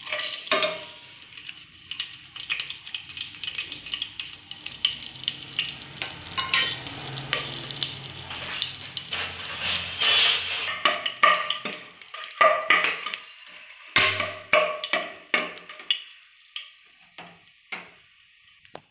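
Whole spices (bay leaves, cloves, cinnamon, shahi jeera, fennel) sizzling and crackling in hot oil in an aluminium pressure cooker, with many sharp pops. The sizzle thins to scattered pops near the end.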